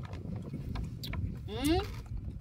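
A young macaque gives one short rising squeal near the end, over a few soft clicks from drinking at a juice bottle.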